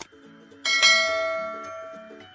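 A bell struck once about two-thirds of a second in, ringing on with bright overtones and slowly fading, over soft background music with gently repeating notes.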